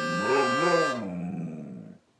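Husky giving a low, wavering vocalisation that rises and falls twice and fades out. A harmonica's held chord dies away in the first second.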